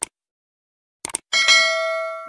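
Mouse-click sound effects, one at the start and a quick pair about a second in, followed by a bright notification-bell ding that rings on and slowly fades: the stock sound of a subscribe-button animation.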